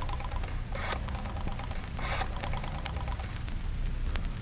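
Radio-drama sound effect of a telephone being dialled: a run of light clicks, broken by a few short rasping bursts.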